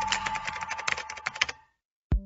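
A radio news sound effect of rapid typing clicks over a steady held tone, fading out about a second and a half in.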